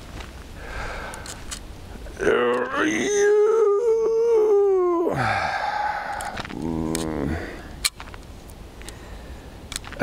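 A man's long, drawn-out cry held for about three seconds, then a shorter falling groan: an angler's dismay as a hooked chub comes off the line.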